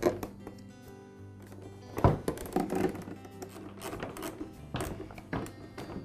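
Background music with steady tones, over a few sharp knocks and clatters of the backpack harness and frame being fitted against the blower's plastic housing; the loudest knock comes about two seconds in.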